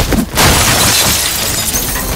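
Film fight-scene sound effects: a heavy hit right at the start, then from about half a second in a long, bright shattering crash of breaking debris.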